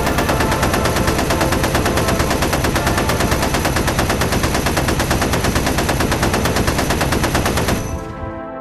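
Sustained rapid machine-gun fire, a fast unbroken run of shots that cuts off suddenly just before the end.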